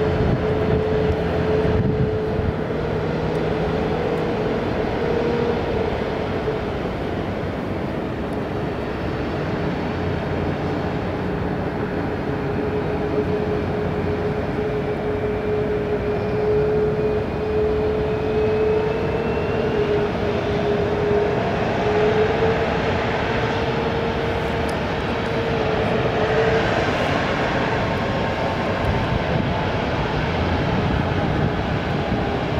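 Boeing 737 MAX 8's CFM LEAP-1B turbofan engines running at low taxi thrust as the jet rolls slowly along the runway: a steady whine over a rushing noise, with a faint higher tone that slowly rises in pitch midway through.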